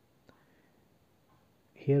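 Near-silent room tone with a single faint click about a quarter of a second in, a TV remote button being pressed. A man's voice starts just before the end.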